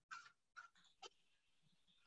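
Near silence: room tone with three faint, brief sounds in the first second or so.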